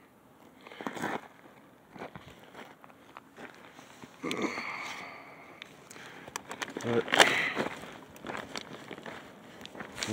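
Footsteps crunching on a gravel dirt road at walking pace, roughly one step a second, with a couple of brief voice sounds in the middle.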